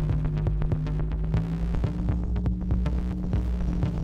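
Improvised electronic music from analog synthesizers: a steady low drone under quick, uneven clicks and short percussive hits.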